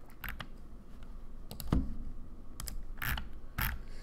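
Computer mouse clicking and its scroll wheel ratcheting as a web page is scrolled down: a handful of separate, irregularly spaced sharp clicks.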